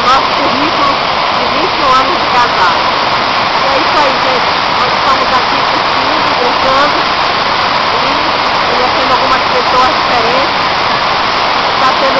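Waterfall water crashing steadily over rock, a loud, unbroken rush close to the microphone.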